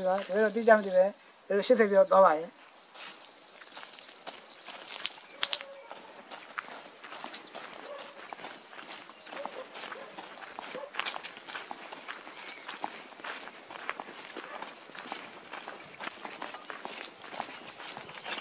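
A man speaks briefly at the start. Then footsteps scuff and crunch on a dirt path as people walk along it, with faint high chirps and a thin steady high buzz behind.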